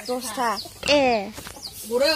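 A chicken clucking: a few short calls, each falling in pitch.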